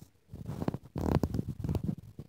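Irregular low, muffled rumbling and rubbing noises, typical of a hand-held phone's microphone being handled while the phone is moved.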